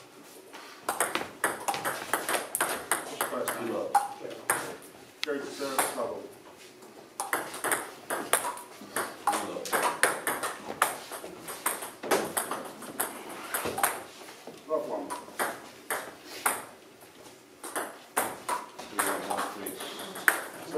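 Table tennis rallies: the ball clicking quickly off bats and table, in runs of strikes with short pauses between points.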